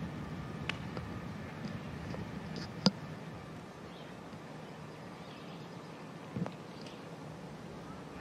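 A golf iron shot: one sharp crack of the club striking the ball about three seconds in, over a low steady background hum.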